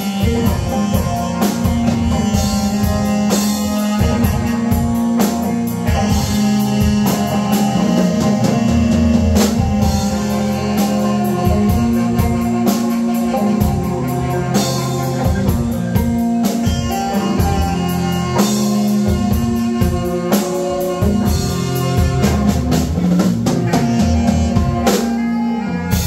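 A live rock band plays an instrumental passage: electric guitar and drum kit, with the saxophone playing along.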